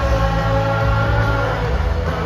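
Live rock band playing loud through a stadium PA, heard from among the crowd: heavy bass and a long held note that dips slightly near the end.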